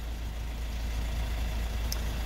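Hyundai iX35's 1.7-litre diesel engine idling, a steady low hum.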